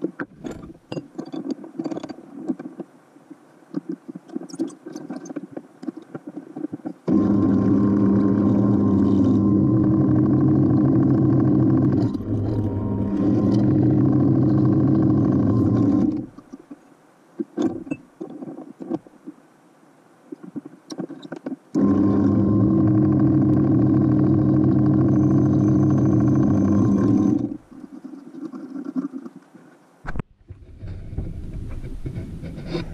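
Bench drill press running twice, about nine seconds and then about six seconds, drilling holes through a solid copper busbar. Before and between the runs come light clicks and knocks of the chuck key and of handling the vise.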